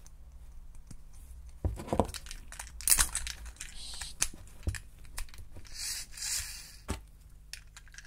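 Small plastic LEGO Technic parts being handled and fitted together: a bushing pushed onto a black axle and a blue Technic frame pressed against other bricks. Irregular small plastic clicks, loudest about three seconds in, with a short rubbing scrape a little after six seconds.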